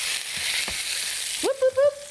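A ball of ground beef sizzling in a hot skillet as it is smashed flat with a spatula. The sizzle drops away about a second and a half in.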